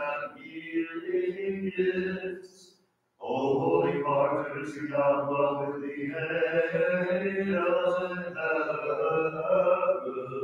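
Voices singing Byzantine liturgical chant in long, held lines. The singing breaks off to near silence for a moment just before three seconds in, then runs on unbroken.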